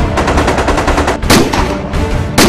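Automatic fire from an AK-pattern assault rifle: a rapid burst of shots lasting about a second, then a single louder shot.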